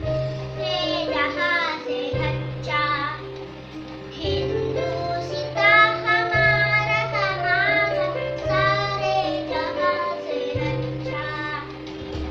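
A young girl sings with a wavering, vibrato-like voice while playing an electronic keyboard. The keyboard holds low accompaniment notes that change about every two seconds.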